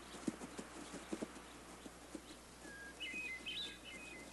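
Faint, irregular hoofbeats of a herd of addax and dama gazelles running on grass. A bird chirps a few times near the end.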